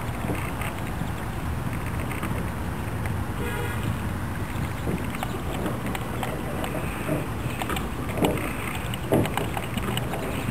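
Steady low rumble of wind on the microphone over open water, with a few sharp knocks near the end.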